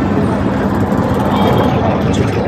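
Busy city street traffic: vehicle engines running close by, with a steady hum and voices in the background.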